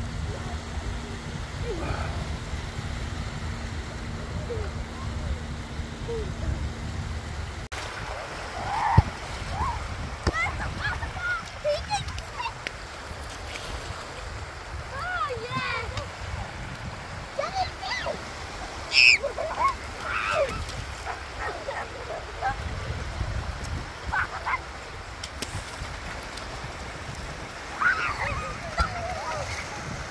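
Seaside shore ambience: small waves washing in over shallow water and wet sand, with scattered distant voices and calls.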